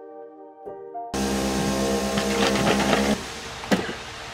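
Capsule coffee machine running as it brews, a loud whir over a steady hum that starts about a second in and cuts off suddenly about two seconds later. A sharp knock follows near the end.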